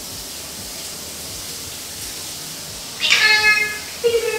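Shower water running steadily. About three seconds in, a male eclectus parrot gives one loud call, starting sharply and lasting under a second.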